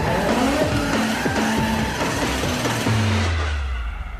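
Film soundtrack of a sports car, the green Mitsubishi Eclipse, sliding sideways through dirt: its engine revving with tyre noise, under music. A low engine note glides down over the last second as the sound fades a little.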